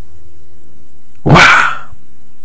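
A single loud, short bark-like cry, about half a second long, a little over a second in, over a faint low hum.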